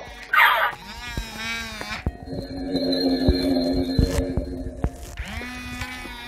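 Galactic Snackin' Grogu animatronic toy playing its sound effects: a short baby-like vocal sound, then an eerie, steady tone held for about three seconds as it uses the Force to take the ball. Scattered clicks run under it.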